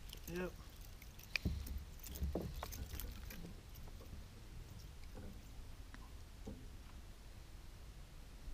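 Faint knocks and handling sounds from a kayak and fishing tackle. A sharp click and a dull thump come about a second and a half in, and another dull thump follows about a second later.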